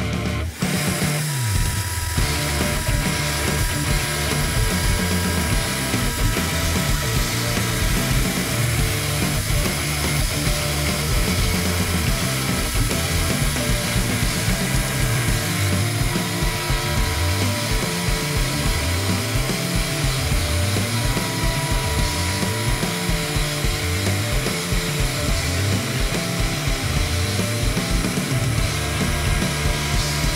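Electric plunge router with a 5 mm roundover bit running and cutting a rounded edge along the top of a wooden guitar body, mixed with background music that has a steady beat.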